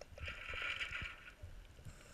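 Scuba regulator hissing for about a second as the diver breathes in, over faint scattered underwater clicks and crackles.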